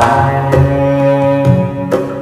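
Background music: low, held bowed-string notes with drum percussion, a struck accent near the end.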